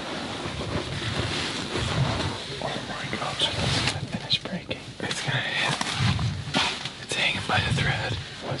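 Rustling and handling noise of a hunting ground blind's fabric against the camera, then a man talking.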